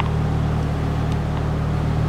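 Steady low droning hum of a running motor or engine, unchanging throughout, with one faint click at the very start.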